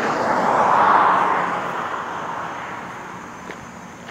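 Rushing noise of a passing vehicle, swelling to a peak about a second in and then fading steadily away.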